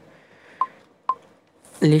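Two short beeps at one pitch, about half a second apart: a smartphone's touch-feedback sounds as the screen is tapped.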